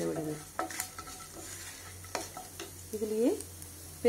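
Dals and seeds frying in hot oil in a nonstick pan, stirred with a wooden spatula: a light sizzle with a few sharp clicks from the spatula and pan.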